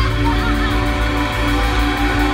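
Live band holding a sustained keyboard chord over electric bass, while a raspy female voice sings a short wavering phrase in the first second.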